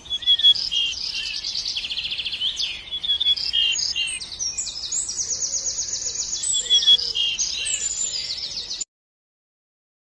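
Songbirds singing: a dense run of varied chirps, whistles and rapid trills that cuts off abruptly to silence about nine seconds in.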